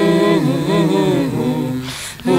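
Unaccompanied voices singing a Swahili poem (shairi) to a slow chant-like melody, holding long, gliding notes, with a brief break for breath near the end.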